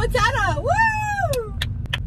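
A person's long whoop, rising in pitch and then sliding down, over the steady low rumble of a moving car's cabin, with a few sharp clicks near the end.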